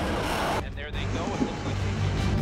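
A dense jumble of a voice and street-traffic-like noise, with a short dip in level a little over half a second in.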